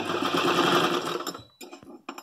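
Electric sewing machine stitching at speed for about a second and a half, then stopping, with a few short clicks after.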